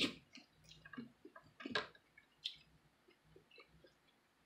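Close-up wet eating sounds of soft, juicy golden dragon fruit being chewed: scattered short smacks and clicks, the loudest right at the start and again just under two seconds in.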